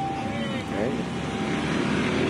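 Steady vehicle engine and traffic noise, with a brief faint voice under it in the first second.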